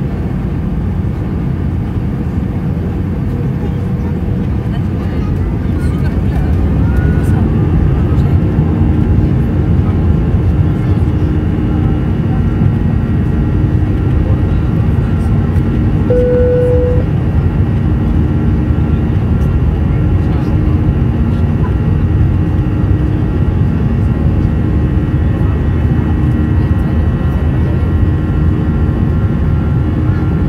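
Airbus A320's CFM56 turbofan engines heard from a cabin seat beside the wing: a steady drone that grows louder from about six to eight seconds in as thrust is raised for a go-around, then holds as the jet climbs. A short single tone sounds about halfway through.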